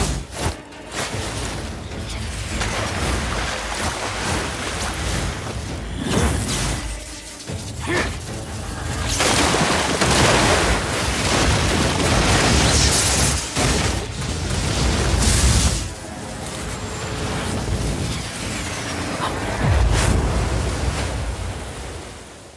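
Animated-battle sound effects: booming blasts and crackling electric energy over background music. The loudest stretch is a long surge in the middle, and a deep boom comes near the end.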